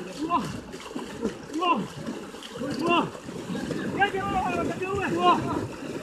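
Several voices shouting and calling out at once over the splashing of people wading and pushing bamboo-framed hand nets through shallow water.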